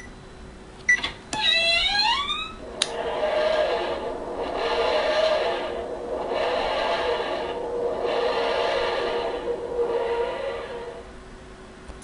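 A keypad beep, a click about a second in and a short rising sweep, then the TARDIS take-off sound effect from a TARDIS smartphone safe: a wheezing, groaning sound that swells and fades about five times, roughly every second and a half, then dies away near the end, signalling that the correct code has been accepted and the door unlocked.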